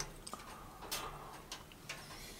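Faint, sharp cracks from a wood fire burning in a stove, a few separate clicks in an otherwise quiet room.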